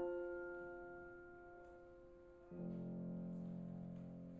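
Flute and Steinway grand piano playing a quiet, slow passage of classical music. A chord sounds at the start and fades, and a lower piano chord enters about two and a half seconds in and rings on, dying away.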